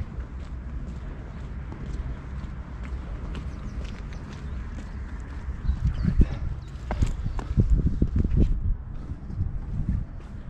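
Footsteps of a person walking on wet stone paving slabs, the steps growing louder and more distinct about six seconds in, at roughly two a second. A low wind rumble on the microphone runs underneath.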